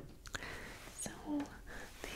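A woman whispering softly; the words cannot be made out.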